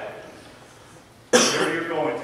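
A man coughs sharply into a microphone about a second and a half in, followed by a short voiced tail.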